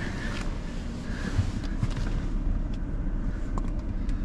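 Rustling and small knocks as a person climbs into a car's driver's seat, over a steady low rumble.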